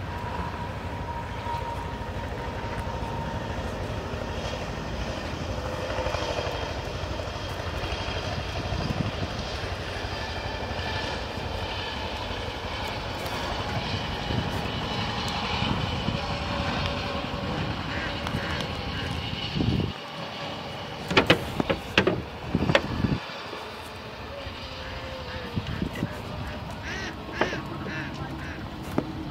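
A steady low rumble with faint voices over it. About three-quarters of the way through it dips briefly, and then comes a cluster of sharp knocks or clicks, with a few more near the end.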